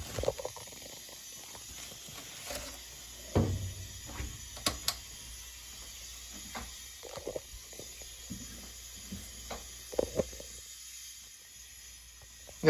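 Plastic takeout bag crinkling and rustling as it is handled, with scattered short crackles and clicks and a few louder handling noises.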